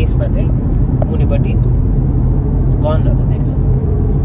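Steady road and engine rumble heard inside the cabin of a moving car, with brief snatches of voice.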